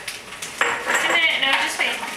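A glass jar handled on a stone countertop, clinking and clattering, with a voice partway through.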